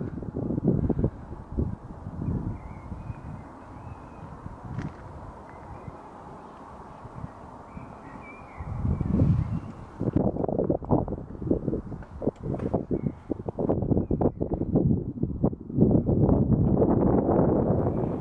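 Wind buffeting the microphone in irregular gusts, calmer through the middle and much stronger in the second half.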